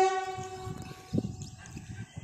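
A locomotive horn ends: one steady high-pitched tone dies away within the first second. Then a faint low rumble with a single dull knock about a second in.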